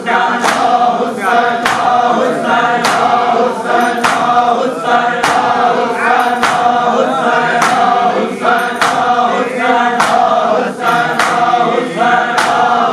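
Men chanting a noha together in unison while beating their chests in matam. The sharp hand-on-chest slaps keep an even beat, about one every 0.6 seconds.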